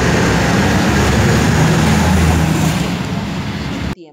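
Volvo FH 6x4 truck running loud as it pulls away and accelerates, heard through a phone recording with heavy noise across the whole range. The sound cuts off suddenly just before the end, as the playback stops.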